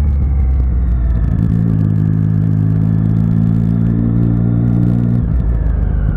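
Motorcycle engine running at a steady cruise, heard from the rider's seat with wind rumble underneath. Its note holds steady, then drops away about five seconds in as the bike slows.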